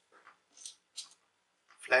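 A few faint small clicks, about three in the first second, from small screws and a tool being handled over the laptop's plastic base.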